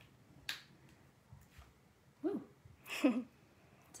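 A small plastic squeeze bottle of liquid watercolour paint: a sharp click about half a second in as its cap is opened, then two short squelchy sputters as paint and air spurt from the nozzle. The spurting is the bottle spraying as it opens.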